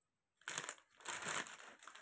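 Rustling and crinkling of folded crepe suit fabric being handled and straightened by hand, in two bursts: a short one about half a second in and a longer one about a second in.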